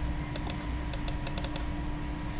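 A run of quick, light clicks from a computer keyboard and mouse, about eight in under two seconds, several close together after the middle, over a faint steady hum.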